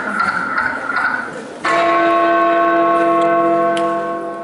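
A church bell strikes once about a second and a half in. The stroke rings on steadily and starts to fade near the end.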